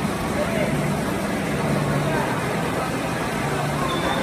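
Indistinct talking and a steady crowd hubbub echoing in a large indoor hall.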